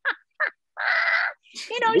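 A woman laughing: two short laughs, then a loud, raspy, drawn-out laughing cry lasting about half a second, with speech starting near the end.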